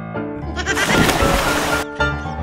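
A person plunging into a canal with a loud splash of water, starting under a second in and cutting off sharply after about a second, over light piano background music.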